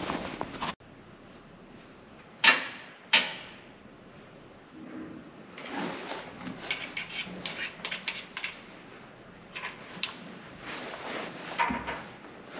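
Metal tools and fittings being handled in a tank's engine bay: two sharp clanks with a short ring about two and a half and three seconds in, then a long run of small clinks and rattles.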